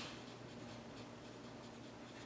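Pen writing by hand on paper: faint scratching of short pen strokes.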